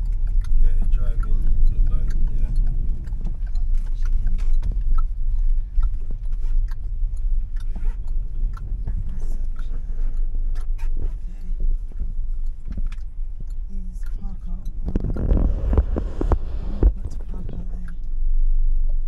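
Low rumble of a car driving slowly, heard inside the cabin. A louder, rougher rushing noise comes in for about two seconds near the end.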